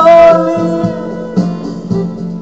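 A man singing a song, holding a long wavering note that stops about half a second in. The backing music carries on with held chords and a steady beat of about two pulses a second.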